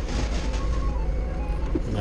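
Doosan 4.5-ton forklift's engine running steadily with a low, even drone, heard from inside the cab as the truck is slowly manoeuvred.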